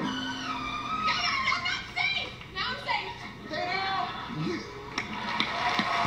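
Guitar-backed music cuts off just after the start, followed by several excited high voices cheering and whooping over one another, their pitch sliding up and down.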